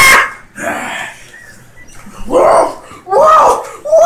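A man yelling loudly: a string of wordless shouts, the later ones close together with pitch that swoops up and down.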